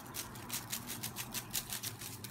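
Folded paper slips tossing and rattling inside a wire-mesh basket as it is shaken to mix raffle entries, in quick even strokes about five a second.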